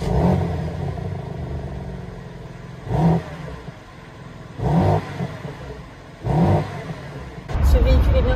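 The 3.0-litre twin-turbo inline-six of a BMW M3 Competition (G80) fires up with a loud flare that settles to a steady idle, then is revved in three short blips of the throttle through the exhaust. Near the end a steady low rumble takes over.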